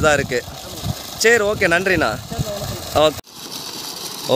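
Men talking over the steady rush of water jetting from the 2-inch outlet pipe of a solar borewell pump and splashing onto soil. About three seconds in the sound cuts off abruptly, then a quieter steady rush of water continues.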